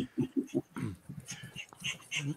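Laughter: a quick run of short chuckles, then a throat being cleared just under a second in.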